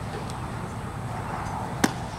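Steady background noise, then a single sharp crack near the end: the impact of a pitched baseball.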